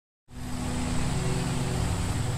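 Silence, then about a quarter second in a steady outdoor background starts: a constant low hum over an even hiss.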